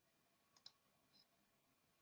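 Near silence, with one faint short click about two-thirds of a second in.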